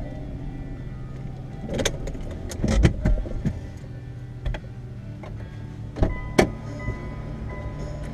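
Knocks, clicks and rustles of things being handled inside a car cabin, loudest in a cluster about three seconds in and again about six seconds in, over a steady low hum.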